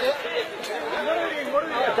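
Several people talking at once, their voices overlapping with no pauses.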